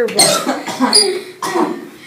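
A person coughing several times in quick succession, a coughing fit of about four harsh coughs.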